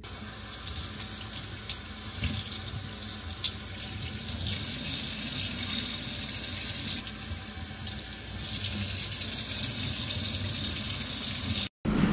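Kitchen faucet running onto wet hair and splashing into a stainless steel sink as hair is rinsed under the stream. A steady rush of water that gets louder partway through, then cuts off abruptly just before the end.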